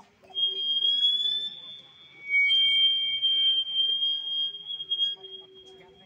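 Public-address microphone feedback: a loud, steady, high-pitched squeal. It starts just after the beginning, drops away briefly about two seconds in, returns, and fades near the end. A fainter low hum sits under it at the start and near the end.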